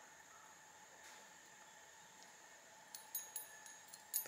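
Near silence for about three seconds, then a few light metallic clinks and jingles as a spinnerbait's blades and wire arm are handled.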